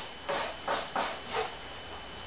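A brush spreading epoxy into fiberglass tape on a wooden hull seam, four short strokes in about a second and a half.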